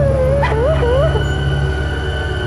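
A high, wavering whimpering cry that rises and falls several times for about a second and then stops, over a low sustained music drone.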